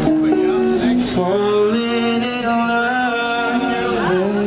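A male singer holds long sung notes that step in pitch, with electric guitar accompaniment, in a live street performance.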